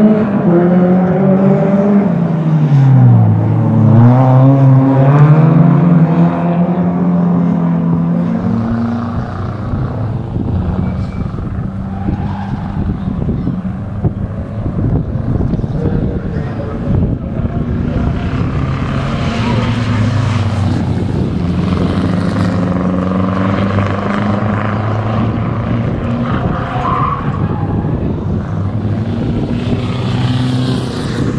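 Rally hatchbacks' engines at racing revs. In the first seconds the engine note drops steeply as a car brakes and changes down, then climbs again as it accelerates away. After that a steadier, lower engine drone continues.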